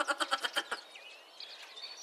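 A cartoon creature's voice sound effect: a quick bleat-like trill, many pulses a second, fading out within the first second. After it come faint bird chirps.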